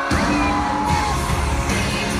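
Live pop concert music from an arena band, with a steady heavy bass and a singing voice. It starts abruptly at the outset.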